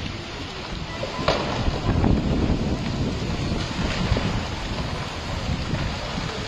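Storm wind blowing in gusts, buffeting the phone's microphone and rushing through the conifers.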